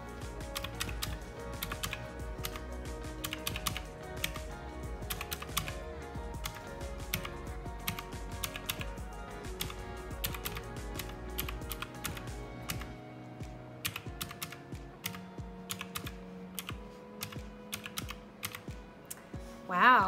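Round plastic keys of a desktop calculator tapped in quick succession, a long run of sharp key clicks as a column of figures is added up, with soft background music underneath.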